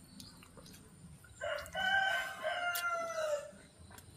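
A rooster crowing once, about two seconds long, starting about a second and a half in, its last note drawn out and falling.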